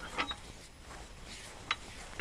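A few faint metal clicks from the hand-crank adjusting gear of an old potato spinner, one a little after the start and a sharper one near the end.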